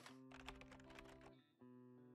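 Faint intro music of held notes with light clicks over it, dropping out briefly about one and a half seconds in.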